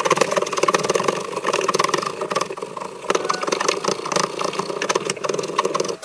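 Steel hand file rasping along a wooden tool handle held in a vise, in repeated strokes about once a second.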